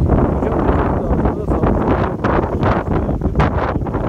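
Wind blowing across the phone's microphone: a loud, gusting low noise that buffets the mic throughout.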